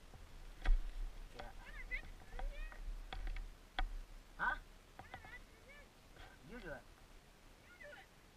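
Indistinct voices in short bursts of a few words, with a few sharp clicks or crunches, the loudest about a second in.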